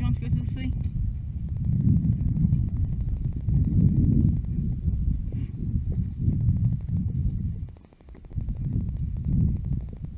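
Wind rumbling on the microphone of a horse rider's camera, swelling and easing in uneven gusts, dropping away for a moment near the end.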